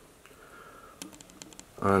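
A few faint light clicks about a second in, in a quiet room, followed near the end by a man starting to speak.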